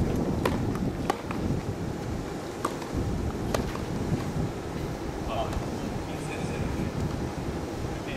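Tennis rally: four sharp racket-on-ball strikes in the first four seconds, over a steady low rumble of wind on the microphone.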